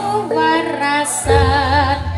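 Live Javanese jaranan music: a woman singing with a wavering voice over gamelan metallophones holding steady notes. Low percussion comes in a little past halfway.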